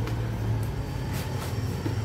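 Cardboard box being torn open by hand: rustling and a few short rips of the flaps, over a steady low hum.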